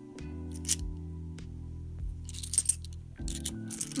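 Background music with steady held low notes, and 50p coins clinking sharply against each other as they are slid off a stack in the hand: once about a second in, a short cluster a little after the middle, and a few more near the end.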